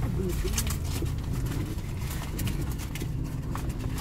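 Car engine idling, heard from inside the cabin as a steady low rumble, with scattered light clicks.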